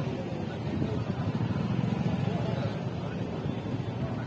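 Outboard motor on an inflatable rescue boat running with a steady low rumble, with people's voices mixed in.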